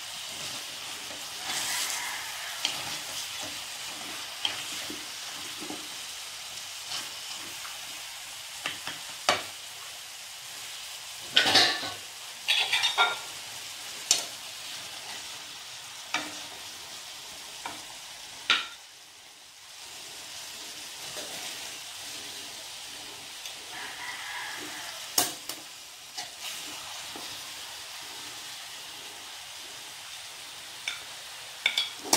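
Pork hocks frying in a reduced adobo sauce in an aluminium wok, with a steady sizzle. Tongs and a metal spoon scrape and clink against the pan now and then, with a burst of louder clanks a little before the middle.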